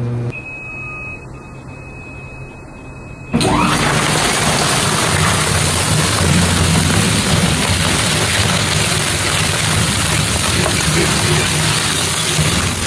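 Dual-shaft industrial shredder with a 50-horsepower drive shredding rolls of sandpaper trim. After a quieter stretch, about three seconds in, a loud, dense tearing noise over a low hum starts suddenly and runs on steadily as the knives chew through the paper.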